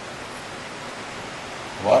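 Steady hiss of background noise on the recording, with a man's voice starting near the end.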